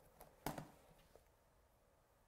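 Near silence, broken by a few faint taps and clicks from hands handling a clear stamp on card. The most distinct tap comes about half a second in.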